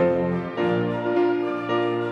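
Grand piano playing a passage of chords, a new chord struck about every half second, in a live performance of a work for piano and orchestra.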